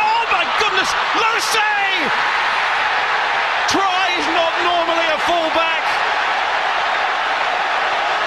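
Stadium crowd cheering loudly and steadily at a try being scored, with raised voices rising over the roar in the first couple of seconds and again about four seconds in.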